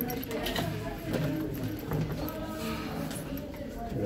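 Footsteps on a narrow spiral staircase with perforated metal steps, a few sharp steps standing out, and indistinct voices of people in the stairwell.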